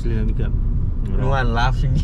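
Steady low rumble of a car in motion, with a person's voice over it.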